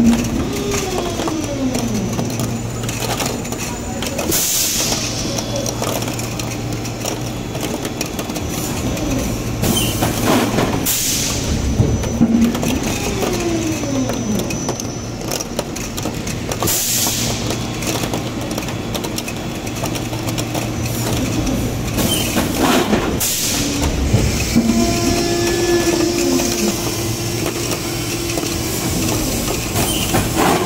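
72-cavity PET preform injection moulding machine running its automatic cycle, which repeats about every twelve seconds: a steady hum from the hydraulic drive, with pitch glides as the machine moves from one stage of the cycle to the next. Short hissing bursts come roughly every six seconds.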